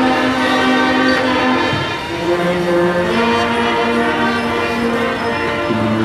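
Marching brass band playing a melody in long held notes that step from pitch to pitch about once a second.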